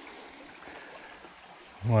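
Small shallow stream flowing over riffles, a steady low rush of water; a man's voice speaks briefly at the very end.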